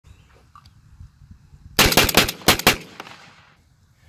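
A rapid string of about five shotgun shots fired within about a second, near the middle, trailing off in a short echo: a semi-automatic shotgun firing as fast as the trigger can be pulled.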